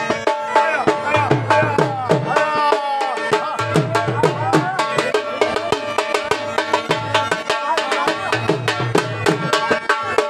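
Bagpipe and dhol drum playing dance music together: the bagpipe's steady drone under a wavering, ornamented melody, over a fast, even drum beat with heavy low strokes.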